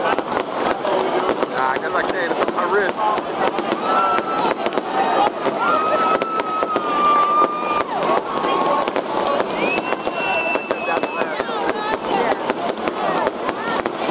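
Fireworks going off one after another: many sharp cracks and pops in rapid succession, with people's voices carrying on over them.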